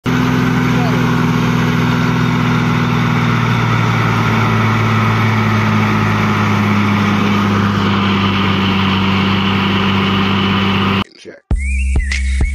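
Heavy diesel engine running steadily under load as a tipper truck is worked out of soft ground on a tow line. It cuts off abruptly near the end, and music starts.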